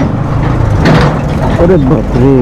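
Bajaj Pulsar NS200 single-cylinder engine running at low road speed, a steady low rumble, with a short sharp noise about a second in and a man's voice near the end.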